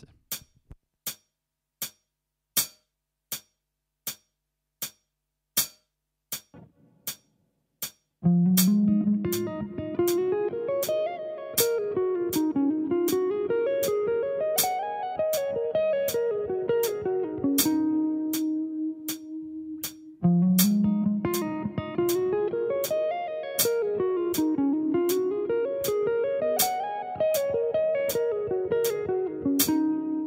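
Electric guitar playing a fast legato lick slowly over a steady metronome click. The click runs alone for about eight seconds, then the phrase of rising and falling runs ends on a held note. The phrase is played twice.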